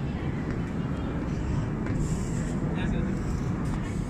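Steady low rumble of outdoor alley ambience while walking, with faint voices in the background.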